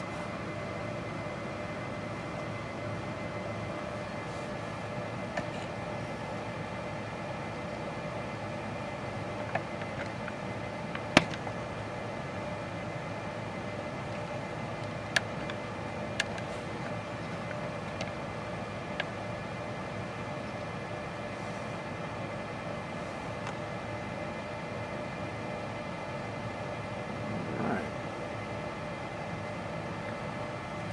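Steady background hum and hiss in a small room, with a few faint, sharp clicks scattered through it. The loudest click comes about eleven seconds in, and a brief soft swell comes near the end.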